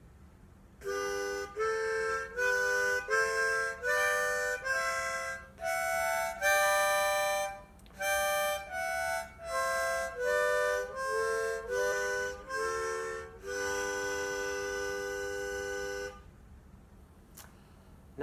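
Hohner Blue Ice plastic-bodied harmonica in G major playing the major scale from the 4th to the 7th hole with alternating blow and draw notes. The scale goes up and comes back down, many notes sounding as small chords, and it ends on a long held note of about two seconds.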